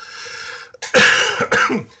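A man coughs, loudly, about a second in, after a softer breathy noise.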